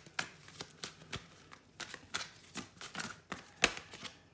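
Tarot cards handled over a table: a run of irregular soft clicks and rubs as cards are slid off the deck and one is drawn, with one sharper snap near the end.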